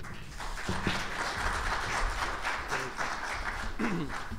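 Audience applauding, many hands clapping in a steady patter that eases off near the end.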